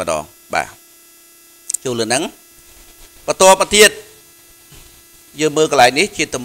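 A steady electrical hum under a man's voice speaking in short phrases with pauses between them.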